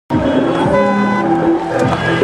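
Car horns honking: several long held blasts overlapping.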